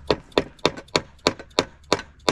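A white-faced mallet tapping a wooden concrete form board, seven quick, sharp taps at about three a second.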